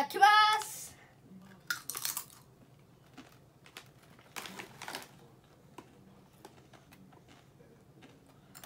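A Doritos tortilla chip being bitten and chewed: a sharp crunch about two seconds in, another about four and a half seconds in, and small crackles of chewing in between.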